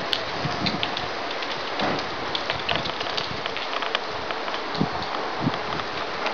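Wind on the microphone: a steady hiss with many scattered crackles.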